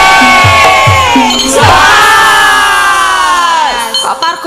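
Javanese gamelan music with low drum strokes about twice a second, breaking off about a second and a half in into a long held vocal cry from several voices, which sags and drops away just before the end as the music stops.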